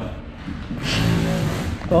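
Speech: voices in the room, ending with a spoken "oh".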